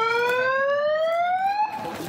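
A siren sounding once, its tone rising steadily in pitch and cutting off after under two seconds: the starting signal as the runners set off in a road race.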